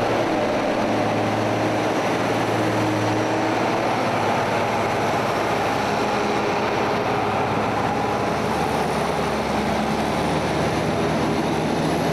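Diesel engines of two farm tractors and a lorry running hard under load as the tractors tow the lorry and its trailer through deep mud. The steady engine drone shifts slightly in pitch about eight seconds in.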